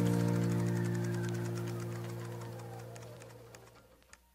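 The final held chord of a pop song fading steadily away to silence over about four seconds.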